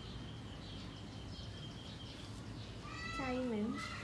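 Domestic cat giving one drawn-out meow about three seconds in, its pitch falling toward the end.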